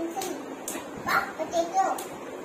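A young child's voice in several short, high-pitched phrases with brief pauses between them.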